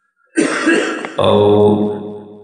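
A man clears his throat, then draws out a long, steady 'o' sound that slowly fades.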